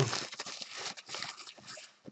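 Plastic shrink wrap and a cardboard box of trading cards being handled and torn open: a quick run of crinkling and rustling.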